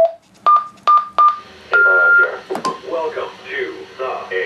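Key beeps from a TYT TH-9800 mobile ham radio as a frequency is keyed in: a click, three short beeps in quick succession, then a longer beep a little higher in pitch and one more short beep. A low voice follows.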